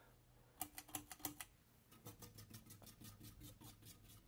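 Emerson 1895 Series ceiling fan running, its motor giving a low hum under a faint, steady run of light ticks, several a second, starting just under a second in.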